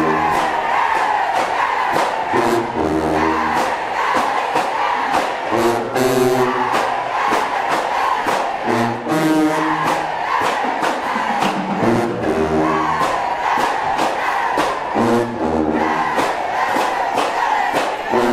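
Marching band playing in the stands: low brass such as sousaphones repeats a short punchy phrase about every three seconds over a steady drum beat, with a crowd shouting along.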